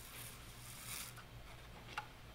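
Faint sipping through a drinking straw from a plastic cup: two short airy sucks, about a quarter-second in and about a second in, then a small click near the end.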